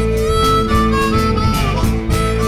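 Blues harmonica playing a fill between sung lines: a long held note with bent, wavering notes above it, over a plucked guitar accompaniment.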